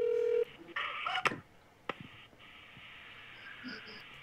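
Telephone call over a speakerphone: a steady telephone tone for the first half-second, then a couple of clicks and a faint hiss of an open phone line as the call connects.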